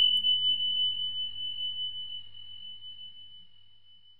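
A single high, pure ringing note, struck just before and fading slowly away over about four seconds: the closing note of the song's acoustic accompaniment.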